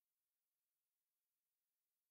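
Near silence: only a very faint, even digital hiss, with no events.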